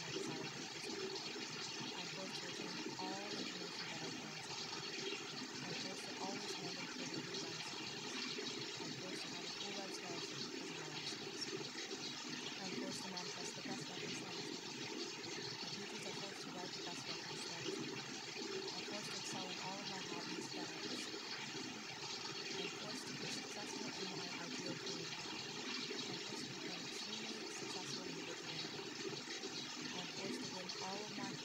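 Steady, unbroken rushing water with faint, indistinct layered voices murmuring beneath it, the affirmations of a subliminal track buried under the water sound.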